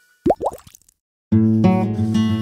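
Two quick rising 'bloop' cartoon sound effects, a brief silence, then a plucked acoustic-guitar music cue starting about 1.3 seconds in.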